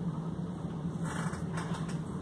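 A steady low hum of room equipment, with a few brief rustling and handling noises about a second in as a painted canvas is moved about.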